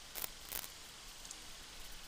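Two soft computer mouse clicks about a third of a second apart, over faint steady microphone hiss.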